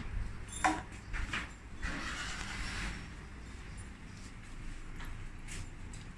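Kitchen handling at a countertop blender: a couple of sharp knocks on the plastic jug in the first second and a half, then a soft rush about two seconds in as flour is tipped into the jug, with a few faint ticks later over a low steady hum.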